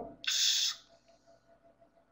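A man's voice ending a long held hesitation sound with a rising pitch, then a short breathy hiss lasting about half a second.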